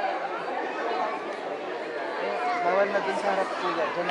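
Crowd chatter: many people talking at once, with no single voice standing out.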